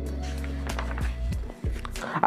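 Pages of a paper textbook being flipped: a scatter of short papery clicks and rustles, over a steady low background hum or music bed that drops away about a second and a half in.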